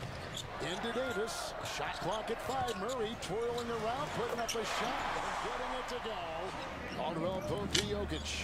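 Basketball dribbled on a hardwood arena court, a run of short sharp bounces, over steady arena crowd noise, heard as game-broadcast audio.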